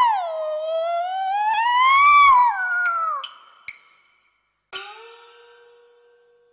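A child singing one long, drawn-out Cantonese opera note that dips and then rises in pitch before falling away, with a few sharp percussion clicks. Near the end, a single struck note from the accompaniment rings and fades.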